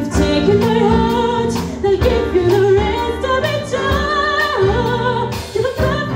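A woman singing live with a full band of electric guitar, bass guitar, drum kit and keyboard, the drums striking at a steady beat under the sung melody.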